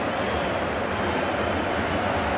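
Steady crowd noise from a packed football stadium, an even hum of many voices with no single sound standing out.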